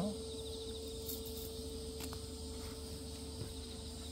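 Insects chirping in a steady outdoor background, with a pulsed high trill near the start and again near the end, and a couple of faint clicks as wire and pliers are handled.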